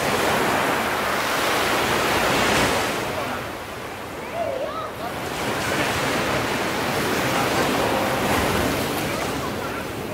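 Ocean surf at the foot of sea cliffs: two waves come in one after another, the first loudest about two to three seconds in, then a short lull, then the second building and holding from about five to nine seconds before easing off.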